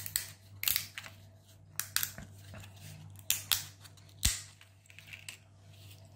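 Irregular sharp clicks and snaps of hard 3D-printed plastic parts being handled, twisted and pressed together by hand.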